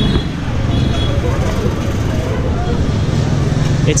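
Busy street ambience: a steady rumble of traffic, with the voices of passers-by mixed in.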